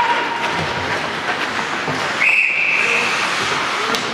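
A referee's whistle blows one steady, high blast a little after two seconds in, lasting about a second, over the noise of the arena. Before that, a lower steady tone fades out about a second in.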